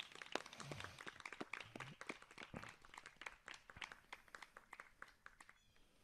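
Faint, scattered clapping from a small group of people, thinning out toward the end.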